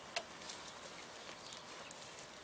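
Cattle feeding on leafy elm branches: faint rustling of leaves and hay with a few light clicks, the sharpest just after the start.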